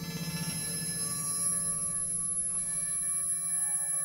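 Generative modular-synthesizer patch: sine-wave oscillators and Mutable Instruments Plaits voices, ring-modulated and processed through Mutable Instruments Rings and Beads, sounding as a dense cluster of sustained ringing tones. A new chord swells in at the start over a wavering low tone, and more high tones enter about a second in and again midway.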